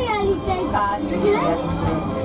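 Children's voices chattering inside a moving monorail car, high-pitched and rising and falling, over the train's steady low running hum.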